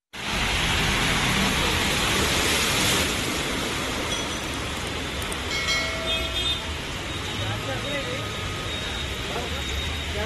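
Steady hiss of heavy rain and water, loudest for the first three seconds, then traffic on a flooded road: a bus running and its tyres going through standing water. A short horn sound comes about six seconds in, and voices near the end.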